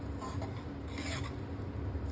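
Spatula scraping and stirring thick spiced mashed-potato filling against a nonstick pan, in a couple of short scraping strokes.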